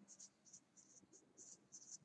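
Felt-tip marker writing on a paper card: faint, short, high scratching strokes as a word is written.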